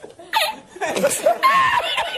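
An older man laughing hard in broken, high-pitched fits.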